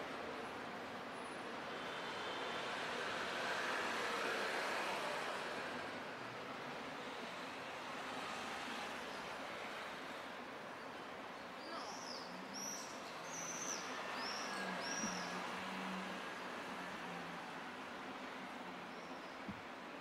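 City street ambience: a steady hiss of traffic, with a vehicle passing and swelling louder a few seconds in. About halfway through, a bird gives a quick run of high chirps.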